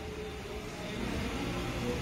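Steady low background rumble with a faint hiss, no distinct event, growing slightly louder after about a second.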